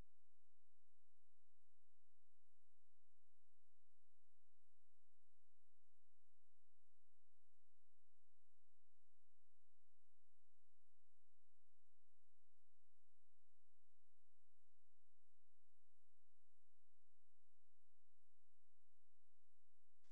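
A faint, steady electronic hum of a few constant tones over low hiss, unchanging throughout.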